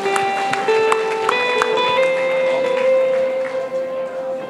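Live keyboard music with slow, sustained notes. The notes change a few times in the first two seconds, then one chord is held to the end.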